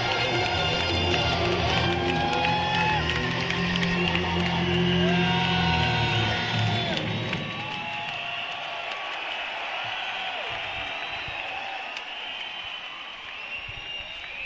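A rock band's closing chord rings out loud through the arena PA, with guitars and bass held, then dies away about seven seconds in. The arena crowd cheers and whoops through it and keeps cheering after it fades.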